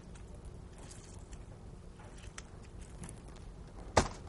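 A lemon being squeezed over the shrimp: faint squishing with a few light clicks, ending in one sharp click.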